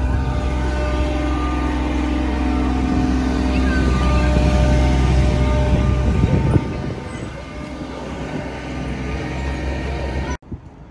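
Heavy diesel semi-truck engine idling close by: a loud, steady rumble. It drops away sharply about six and a half seconds in, leaving a quieter steady hum.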